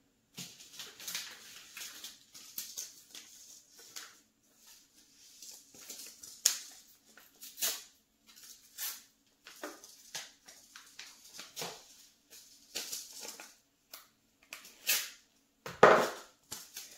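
Irregular handling noises: rustles, crinkles and light taps of plastic milk-jug planters and paper seed packets being handled while seeds are sown. A faint steady hum runs underneath.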